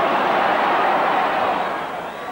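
Football stadium crowd noise, a steady wash of many voices from a packed ground.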